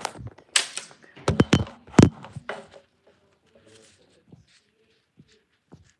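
Handling noise from a phone being picked up and moved: a quick series of knocks and scrapes, the loudest about two seconds in, then a few faint clicks.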